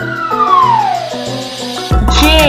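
A single cartoon whistle sound effect sliding down in pitch over nearly two seconds, over light children's background music.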